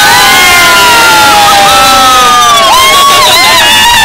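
A few people cheering together with long, loud held whoops, several voices overlapping and wavering in pitch.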